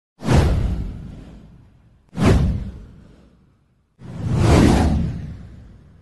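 Three whoosh sound effects for an animated title card. The first two swell quickly and fade over about a second and a half each; the third, about four seconds in, swells more slowly and fades out.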